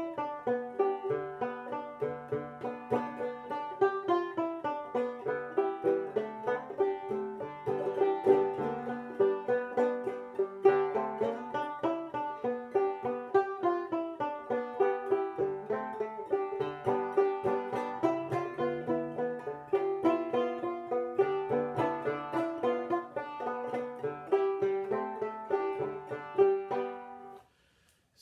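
Homemade mountain banjo, built from Tigerwood flooring with an 11-inch head and a cushion inside the pot to damp it, picked through a tune at a brisk pace with one note recurring throughout. The playing stops about a second before the end.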